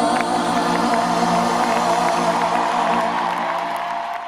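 A live pop band and singer holding a long sustained chord with a wavering held vocal note, loud in an arena, starting to fade out near the end.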